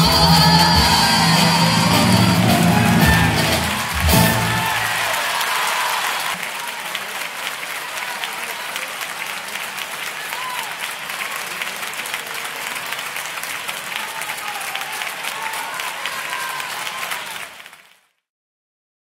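A female copla singer and orchestra hold the closing note of the song and end on a final chord about four seconds in. An audience then applauds steadily, and the applause fades out near the end.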